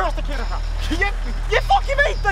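Raised voices of two people arguing, over a steady low hum.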